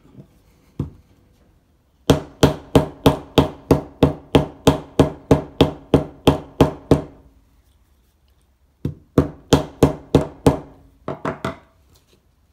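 Mallet striking a glued leather belt loop down onto a knife sheath against a hard bench top, setting the glue bond: a run of about seventeen even strikes, roughly three and a half a second, then after a pause five more and a quick flurry of lighter taps near the end.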